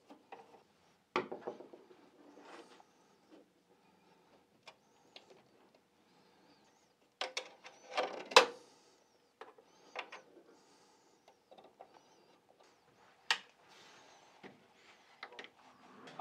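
Hands handling graphics cards and power cables inside a PC case: scattered clicks, knocks and rubs of plastic and metal, with short pauses between them. A cluster of clicks comes about seven to eight and a half seconds in, and single clicks follow near ten and thirteen seconds.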